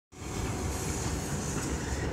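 A passenger train hauled by a VL82M dual-system electric locomotive pulling out of the station. There is a steady low rumble of wheels on rail, with a high hiss over it.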